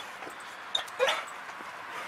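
Belgian Malinois detection dog giving a brief whimper about a second in.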